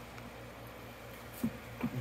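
Steady low hum and hiss of a small fan running in the grow tent, with a couple of short, faint sounds in the last half second.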